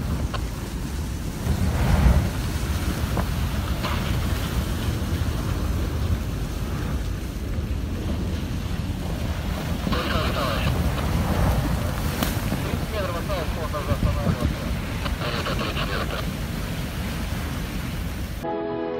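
Hull of the ice-class container ship Kapitan Danilkin grinding and cracking through sea ice as it passes close by, a steady low rumble with a louder crunch about two seconds in. Wind buffets the microphone.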